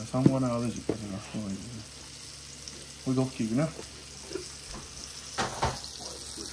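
Smelts frying in oil in a cast iron skillet, a steady sizzle, with a couple of sharp knocks about five and a half seconds in.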